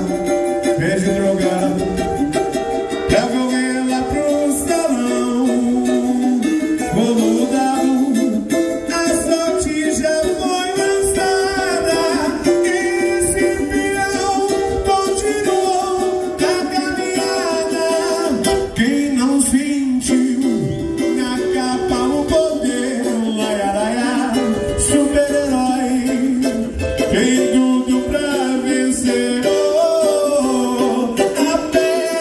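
Live samba music: a cavaquinho strummed and picked with a voice singing along.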